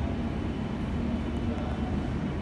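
Steady low indoor rumble of room noise, with faint voices in the background.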